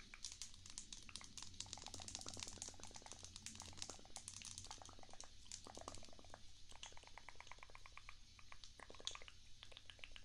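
Makeup brushes worked close to the microphone: a quiet, continuous run of rapid scratchy bristle strokes with light ticks.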